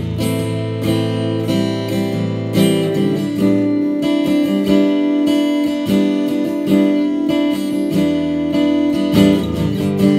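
Ibanez AE315NT cutaway electro-acoustic guitar with a solid Sitka spruce top, played as a demonstration: picked chords left to ring, with new notes struck about every half second.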